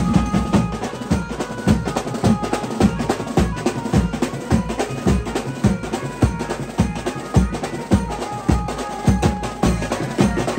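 A troupe of many stick-beaten drums playing a fast, dense, driving rhythm. Faint held tones sound above the drumming.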